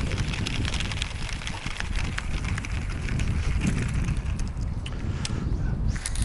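Wind buffeting the microphone as a steady, uneven low rumble, with scattered small clicks and ticks over it.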